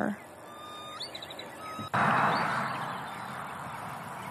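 A golf iron shot struck from the fairway about two seconds in: a sharp click, then a wash of noise that slowly fades.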